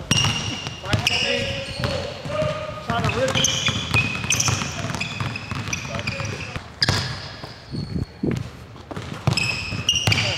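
Basketballs bouncing on a hardwood gym floor, with sharp knocks of the ball and short high-pitched squeaks of sneakers on the court, heard in a large indoor gym.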